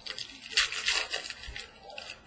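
A foil trading card pack wrapper being torn open and crinkled by hand. It crackles for about a second and a half, loudest about half a second in.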